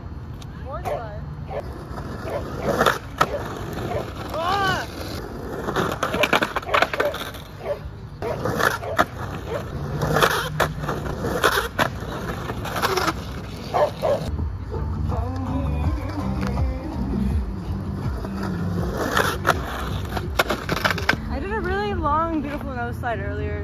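Skateboard wheels rolling on asphalt with a continuous low rumble, broken by about ten sharp clacks and knocks of the board popping, landing and hitting the ground as tricks are tried on a curb. The rumble grows heavier for a stretch in the second half.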